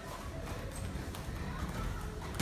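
Footfalls and light taps of two kickboxers stepping and bouncing on a padded gym mat while sparring lightly, with a few faint, soft knocks and no hard strike.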